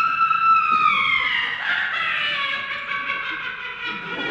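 A long, high-pitched scream, held for about four seconds and slowly falling in pitch, loud enough to make those nearby ask what it was.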